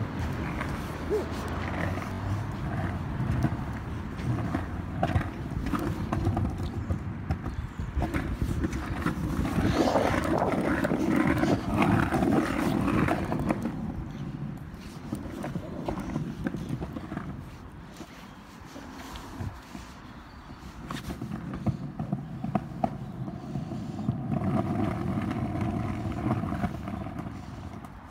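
Skateboard wheels rolling over pavement: a steady rumble with irregular clacks over the joints and grit. It is loudest about ten seconds in and eases off for a few seconds past the middle.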